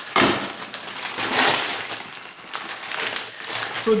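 Plastic packaging bag crinkling and rustling in several bursts as it is pulled open and a prebaked pizza crust is slid out of it.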